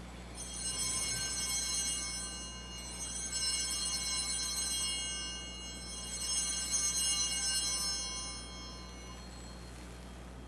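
Altar bells, a hand-held set of small bells, shaken and rung three times, each ring lasting about two and a half seconds. They mark the elevation of the consecrated host.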